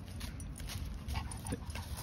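Low outdoor noise with faint scuffs and clicks of footsteps and dog paws on leaf-strewn pavement.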